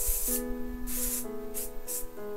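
Aerosol hairspray can spraying in several short hisses, a final spritz over a finished hairstyle, with soft background music underneath.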